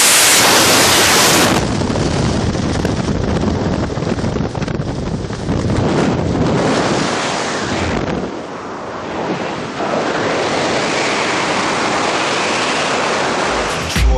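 Heavy wind rushing over a skydiver's camera microphone during the jump. It is loudest in the first second and a half, then stays steady, easing briefly around eight to nine seconds in.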